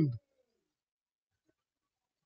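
The end of a man's long, sung-out shout, its pitch sliding down until it cuts off about a fifth of a second in; then dead silence.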